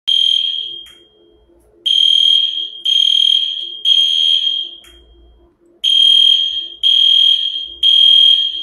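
Smoke alarm sounding: loud, high-pitched beeps in groups of three, each group starting about four seconds after the last. This is the temporal-three pattern that signals smoke or fire.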